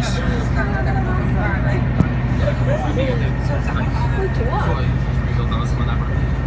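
A stopped city bus's diesel engine idling with a steady low hum, while people talk around it. There is a single sharp click about two seconds in.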